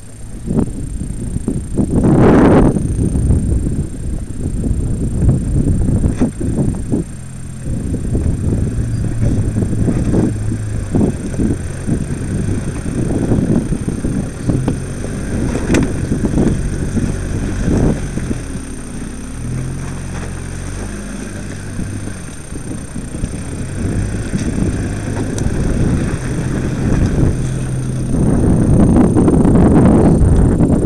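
Mitsubishi Pajero 4x4's engine working steadily under load as it climbs a rocky off-road track and passes close by, with knocks from the tyres on stones. Wind buffets the microphone, loudest in a gust a couple of seconds in.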